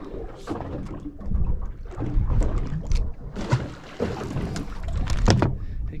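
Wind rumbling on the microphone and water slapping against a small boat's hull, with irregular knocks and clatter of handling on deck. The sharpest knock comes about five seconds in.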